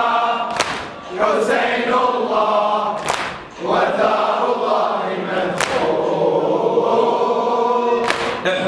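A crowd of men chanting a latmiya (Shia mourning lament) in unison, in phrases with short breaks between them. A few sharp slaps of hands striking chests cut through the singing.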